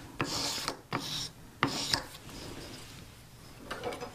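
Polishing paper on a stick rubbed back and forth across the face of a bezel rocker, in a few quick strokes that stop about halfway through. This is the final polishing step, meant to leave the tool's face with a little tooth.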